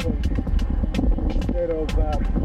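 Wind rumbling on the microphone of a handlebar-mounted camera on a moving road bike, with indistinct voices mixed in.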